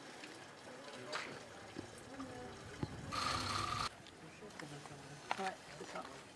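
Faint voices talking in the background, with a few sharp clicks. About three seconds in, a loud burst of hiss carrying a steady tone lasts just under a second and cuts off suddenly.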